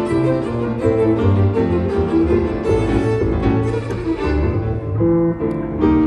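Violin bowed live in a Cuban conga-style tune: a quick melody of short, pitched notes over a steady low bass line.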